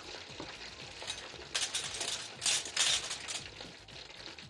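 Food frying and sizzling in a pan, with a few louder spells of hissing in the middle.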